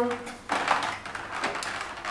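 Rigid clear plastic packaging being handled and opened by hand: a run of irregular small clicks and crackles of plastic.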